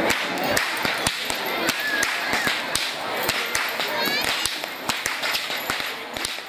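Ceremonial perahera whips cracking: many sharp cracks at uneven intervals from several whip-crackers at once, over the chatter of a large crowd.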